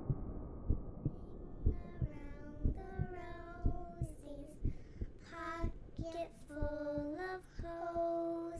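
Soundtrack over the end credits: low, regular heartbeat-like thumps about twice a second, with a high, slow sung melody coming in about two seconds in while a low rumble fades away.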